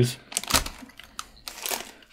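Plastic snack wrapper crinkling as it is handled, a string of short, irregular crackles.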